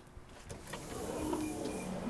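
Automatic sliding glass entrance doors opening, the door operator's motor starting with a sudden whirring rush about half a second in and running steadily as the panels slide apart.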